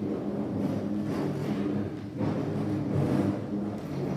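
Instrumental music of sustained low chords that change every second or so.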